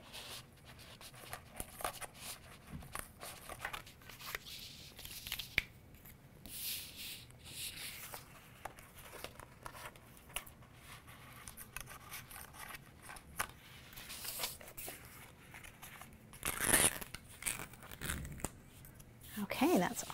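Cut cardstock pieces being peeled off an adhesive cutting mat and pried loose with a spatula tool: small crackles, scrapes and paper rustling. The loudest is a brief tearing rasp about three-quarters of the way through, as a long strip pulls free of the mat.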